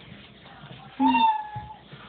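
Robotic toy cat giving one electronic meow about a second in: a brief low note that jumps to a held higher tone, then fades.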